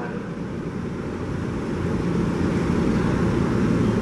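Diesel-electric locomotive engine running as the locomotive moves along the track: a steady low rumble with a droning tone that grows louder about halfway through.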